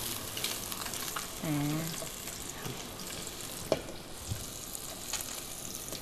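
A salmon fillet frying in melted butter in a small pan: a steady sizzle with a few faint clicks.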